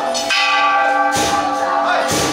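Bells struck about once a second, each stroke sharp, with their ringing tones held steady between strokes.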